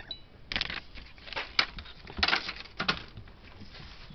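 Clattering rattles and knocks from objects being handled, in about four short bursts less than a second apart.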